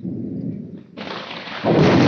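An approaching thunderstorm: a sudden loud, deep rumble, joined about a second in by a rushing noise that swells louder near the end.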